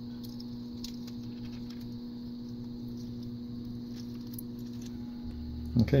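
Faint light clicks and scrapes of small plastic parts handled as a blue micro servo is pushed into a plastic robot pelvis frame, over a steady low electrical hum.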